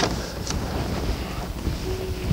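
Steady low rumbling background noise, with a sharp click at the start and another about half a second in as a book is handled at a wooden pulpit.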